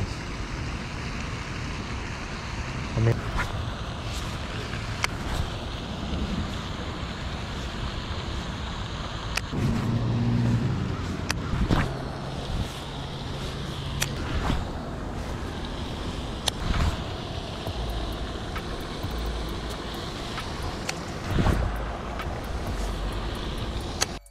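Steady outdoor background noise with a low rumble, like distant traffic and wind, broken by a few sharp clicks and knocks.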